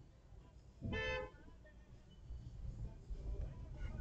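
A single short toot of a car horn from the Audi behind, about a second in, sounded the moment the light turns green to hurry the car in front to move off. A low rumble of traffic pulling away follows.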